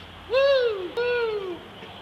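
A person's voice hooting twice, each call rising briefly then sliding down in pitch, the two about half a second apart.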